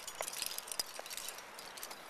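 Faint, irregular clinking and light clicks of climbing hardware (carabiners and gear on a harness), with rope handling, as a climber arrives at the belay.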